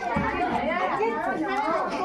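Several people talking over one another: overlapping chatter of a small group of voices, with no single clear speaker.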